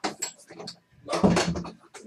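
A door being shut, with its loudest knock and rattle a little over a second in.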